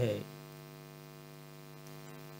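A steady, unchanging hum with many overtones, heard in a pause in the narration after the last syllable of a spoken word at the very start.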